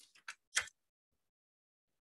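Four short, quick clicks in the first second, the last the loudest, then silence.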